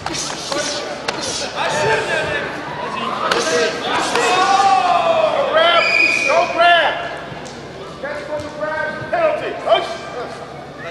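Men shouting and calling out during a karate bout, their voices rising and loudest in the middle, over sharp thuds and slaps of punches and kicks landing, with a few hard impacts near the start and one near the end.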